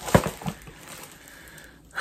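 Makeup packaging being handled: a sharp light knock, then a softer click, followed by low room noise.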